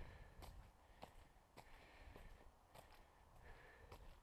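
Faint footsteps on a dirt road, about two steps a second, heard from a head-mounted camera, with the walker's soft breathing between them.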